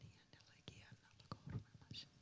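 A woman whispering very faintly, a whispered prayer in tongues under her breath.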